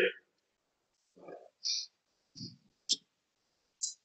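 A pause holding only a few faint, brief voice sounds and a sharp click about three seconds in.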